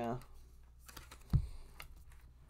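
A tarot card being dealt onto a cloth-covered table: a few light clicks of the cards, then a single dull thump as the hand lays the card down and presses on it, about two-thirds of the way in.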